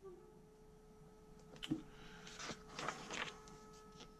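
Paper rustling as a page of a glossy printed book is turned, mostly between about one and a half and three seconds in. A faint steady electronic tone runs underneath.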